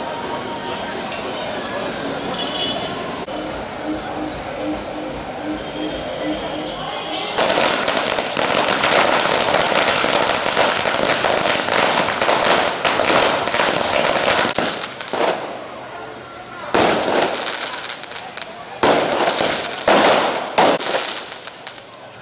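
Crowd murmur, then about seven seconds in firecrackers go off on the street: several seconds of dense, rapid crackling bangs, followed by a few separate bursts near the end.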